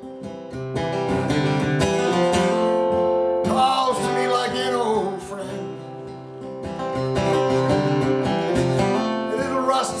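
Acoustic guitar strummed in steady chords, an instrumental passage between sung lines of a folk song.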